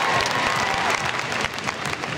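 Arena crowd applauding after a gymnast lands a floor tumbling pass: many hands clapping at once, with crowd voices faint underneath.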